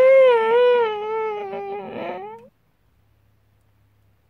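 A high, wavering whimper lasting about two and a half seconds, ending on a short rising note, then it stops.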